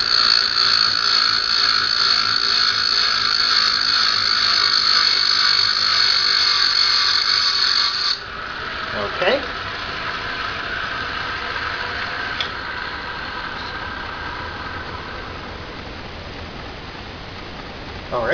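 Diamond saw cutting through a glass tube turning in a lathe chuck, lubricated with WD-40: a steady high-pitched grinding that stops abruptly about eight seconds in. A quieter running sound from the machine then fades away over the next several seconds.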